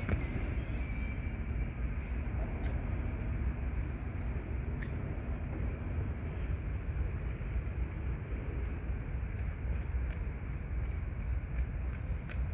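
Steady low road rumble of a moving vehicle, heard from inside, with a few faint clicks.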